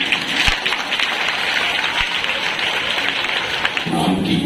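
Audience of schoolchildren applauding steadily.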